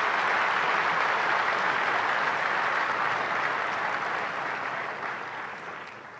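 Audience applauding, holding steady and then dying away over the last couple of seconds.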